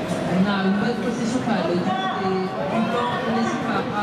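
Speech: a man's voice talking continuously, with the hall's echoing background underneath.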